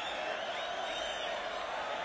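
Large concert crowd cheering and shouting, a steady wash of many voices with scattered whoops.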